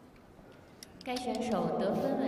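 Low background noise for about a second, then a woman's voice starts speaking and carries on.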